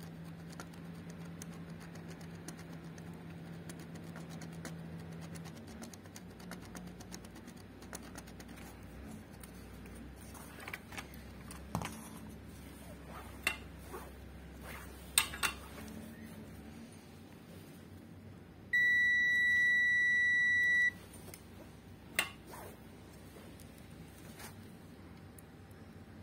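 A digital multimeter's continuity buzzer gives one steady high-pitched beep of about two seconds, a little past the middle: the probes are across a joint that is connected. Before it there are a few light clicks from handling the circuit board, and a low hum in the first few seconds.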